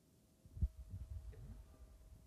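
Quiet room tone with a faint steady hum, broken about half a second in by a single soft low thump and then some low rumbling.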